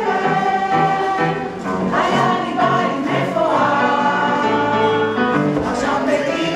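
Cast of a stage musical singing together in chorus over instrumental accompaniment.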